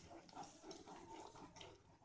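Very faint wet squelching of a spatula stirring curd and cashew paste into thick curry gravy in a nonstick pan.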